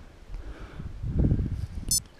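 Uneven low rumbling of handling noise on a handheld camera as it is swung around, swelling about a second in.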